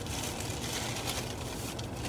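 Wrapping paper and a plastic shopping bag rustling and crinkling as items are unwrapped, over a steady low hum in a car's cabin.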